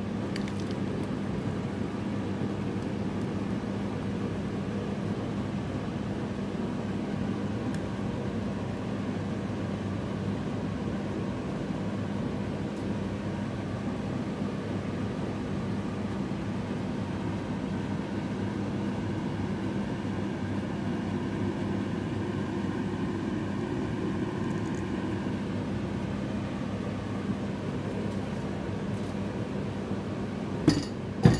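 Steady mechanical hum with a constant low tone, even throughout and never changing.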